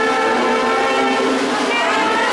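Brass band playing a processional march, holding long, sustained chords.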